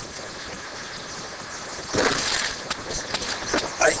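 Faint steady outdoor background, then about halfway through a sudden thud with a brief rush of noise and a few light clicks: a thrown rock hitting a man, who drops to the grass.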